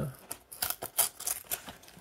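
Small cardboard box being worked open by hand: an irregular run of sharp clicks and crackles as the card flaps are pried and bent.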